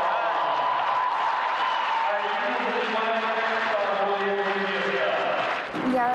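A man's voice announcing a skater's total score and a new personal best.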